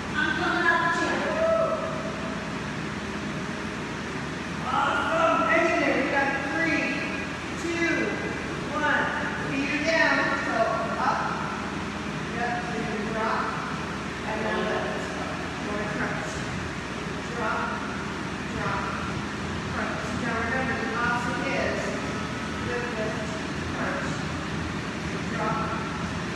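A person's voice, indistinct, with pauses, over a steady low hum.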